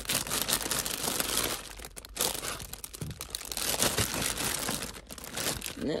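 Clear plastic poly bags crinkling and rustling continuously as a hand digs through a box of bagged items, easing briefly about two seconds in and again near the end.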